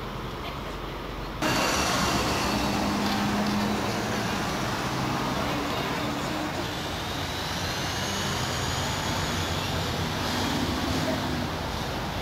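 Steady city street traffic noise, louder from a sudden jump about a second and a half in, with a faint high whine over it later on.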